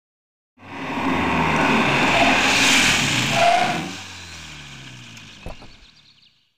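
A car driving by: engine and tyre noise swells to a peak through the middle, then the engine's pitch falls as it fades away, with a short click near the end.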